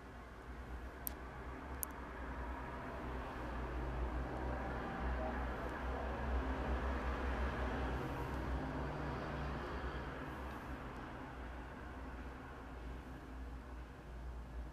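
Steady low hum and hiss of indoor background noise, with two faint clicks about one and two seconds in.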